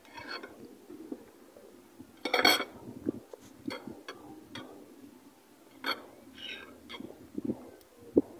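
A spoon clinking and scraping against a bowl and plate as food is dished out: a scatter of light clinks, with a louder burst of clatter about two seconds in and another near six and a half seconds.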